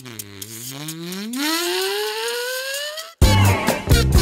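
A pitched sound effect laid into the soundtrack: one tone dips briefly, then slides steadily upward for about three seconds and cuts off suddenly. Bouncy background music then comes back in near the end.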